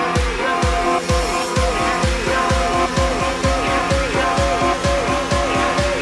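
Background music: an upbeat song with a steady kick-drum beat that quickens about a second and a half in, over a repeating falling synth figure, with no singing.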